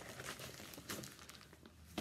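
Faint crinkling and rustling of a plastic project sleeve and linen embroidery being handled, in a string of small scattered crackles.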